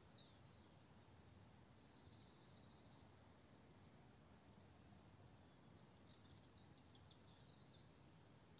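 Near silence, with a few faint, distant bird chirps and a short high trill about two seconds in.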